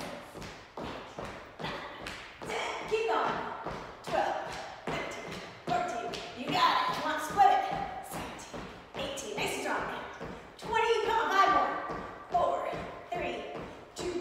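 Sneakers landing on a wooden gym floor in a steady rhythm of about two to three thuds a second: a person doing jumping jacks, with a woman's voice breaking in now and then.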